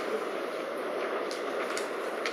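Steady background room noise, with a few faint clicks after the first second.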